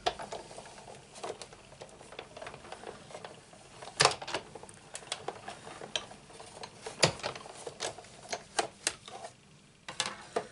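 Sizzix Big Shot die-cutting machine being cranked by hand, running its plastic cutting plates and a doily die through the rollers a second time to get a cleaner cut. Scattered sharp clicks and clacks of the plates and mechanism, the loudest about four and seven seconds in.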